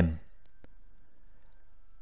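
The last syllable of a man's narrating voice, then a pause of faint background hiss with two faint clicks about half a second in.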